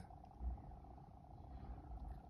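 A pause between sentences: faint room tone, with a low rumble and a faint steady hum.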